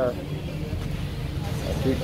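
Busy market background: a low steady rumble with faint voices in the background, and a voice starting to speak near the end.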